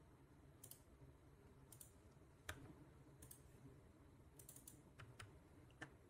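Faint, scattered clicks of computer keys, single presses spread through several seconds with a quick run of three or four a little past the middle.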